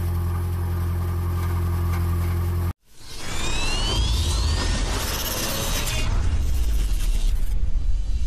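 A 2010 Toyota Prius's 1.8-litre four-cylinder idling with a steady low hum and buzz from a loose, rusted-free exhaust heat shield vibrating under the car. It cuts off abruptly a little under three seconds in, and an intro sting follows: whooshes, two rising electric zaps and low rumbles.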